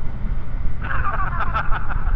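Steady wind rush and low engine and road rumble from a motorcycle cruising at speed, heard at the rider's microphone. About a second in, a thin, tinny voice comes through the helmet intercom over it.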